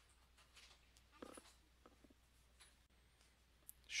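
Near silence: room tone with a low hum and a few faint clicks.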